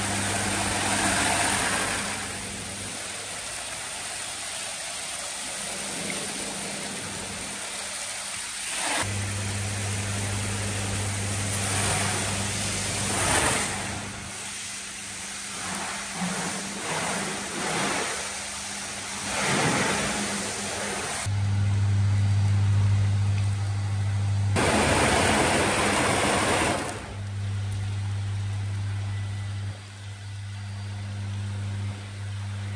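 High-pressure washer spraying water onto a car's bodywork: a continuous loud hiss that surges now and then, with the pump's steady low hum cutting in and out.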